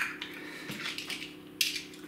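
Small AAA batteries and a plastic camping lantern being handled as the batteries are lined up in the lantern: a sharp click right at the start, a few faint clicks, then a short scraping clatter near the end.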